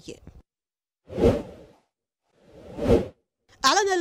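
Two whoosh transition sound effects between news items. The first comes in sharply about a second in and trails off. The second swells up and cuts off suddenly about three seconds in.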